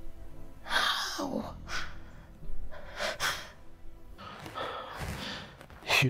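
A person's breathy gasps, about four of them, over soft background music.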